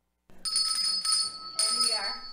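A small bell rung twice, each time ringing on with several clear high tones.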